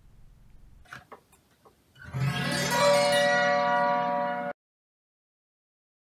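A few light clicks, then about two seconds in an Oscar Schmidt Chromaharp autoharp is strummed once from the low strings up to the high strings with the new B minor chord bar pressed down. The strum is a test of whether the rebarred chord sounds as B minor. The chord rings for a couple of seconds and then cuts off suddenly.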